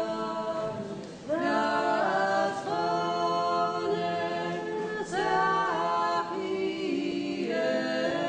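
Unaccompanied choir singing Orthodox liturgical chant in several held chords, phrase after phrase, with a short break about a second in.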